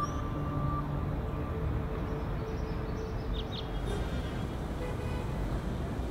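Steady city traffic rumble, a low wash of distant road noise with a faint tail of music dying away in the first seconds.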